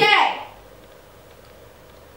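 A girl's voice finishing a short spoken word at the very start, then quiet room tone with a faint low hum.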